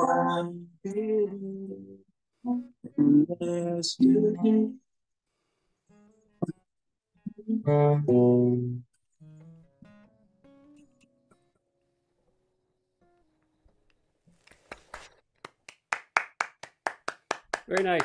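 A man singing the closing lines of a song over a strummed acoustic guitar, the last chord fading to quiet. Then a person clapping, about four claps a second and getting louder near the end.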